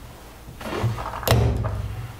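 Plastic case of a trimpot (trimmer potentiometer) cracking open under the jaws of cutting pliers: a couple of small clicks, then one sharp snap a little past the middle, with handling thuds.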